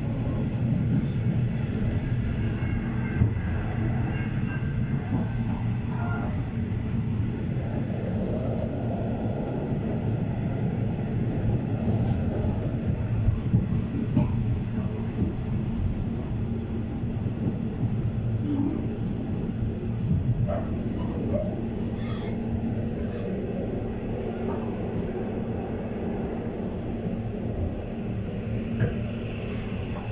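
Passenger train carriage in motion, heard from inside: a steady low rumble of wheels on the rails, with a few sharp clicks and knocks from the track along the way.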